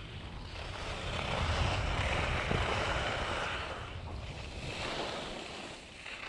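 Skis sliding and scraping over groomed snow, a hiss that swells about a second and a half in and eases off again by about four seconds, under a low rumble of wind buffeting the camera microphone.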